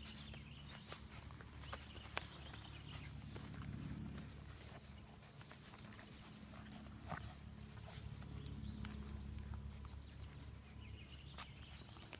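Faint outdoor background: a low steady hum with scattered light clicks and rustles.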